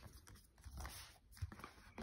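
Faint handling of a cardboard tablet box on a fabric table mat, a hand sliding over it and lifting it, with two soft knocks, one about a third of the way in and one about three-quarters of the way in.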